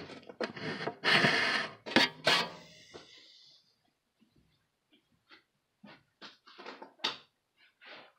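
Rustling and handling noise close to a phone's microphone as a person moves right beside it, with a few loud scuffs in the first three seconds. Then a few faint short taps.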